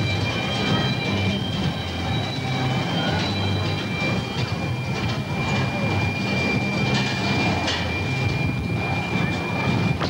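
Roller coaster train running along its steel track: a steady low rumble, with a thin steady high tone above it.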